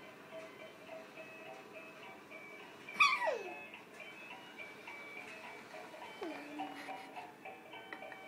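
Electronic tune from a ride-on toy horse's sound unit: a thin melody of simple held notes that steps up and down. About three seconds in, a loud sound slides sharply down in pitch, and a smaller falling sound follows near six seconds.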